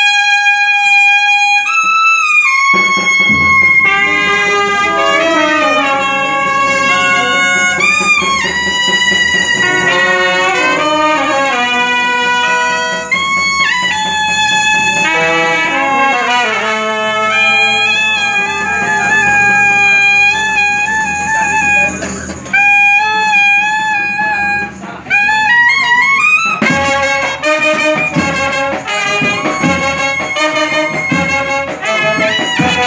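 A small brass band of horns and drum plays a lively tune. A single melody line sounds alone at first, and the full band with its low horns and drum comes in about three seconds in. Near the end the band thins to the lead line for a few seconds, then comes back in.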